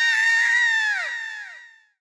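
A cartoon character's high-pitched voice holding one long, drawn-out cry that drops in pitch and fades out in the last half second.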